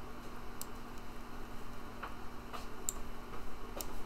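About five light, irregularly spaced computer mouse clicks while a window is being resized on screen, over a low steady room hum.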